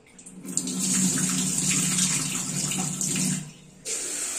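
Tap water running into a steel bowl as it fills. The water starts about half a second in, stops at about three and a half seconds, and starts running again just at the end.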